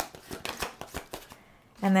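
A deck of oracle cards being shuffled by hand: a quick run of short, light card flicks and slaps that stops about a second and a half in.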